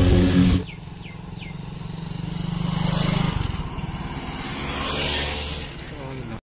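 Intro music cuts off about half a second in, then motorcycle engines pass on a road. One grows louder, peaks about three seconds in and drops away, and a second, softer swell follows near the end.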